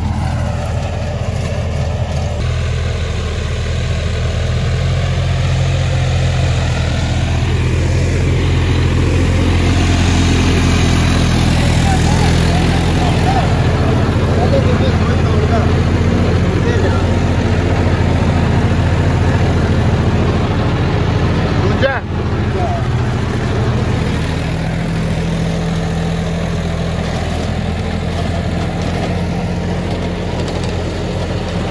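John Deere 5310 tractor's three-cylinder diesel running steadily under load near 1800 rpm while pulling a rotary superseeder through the soil, its speed dropping only slightly with the load. There is a sharp click about two-thirds of the way through.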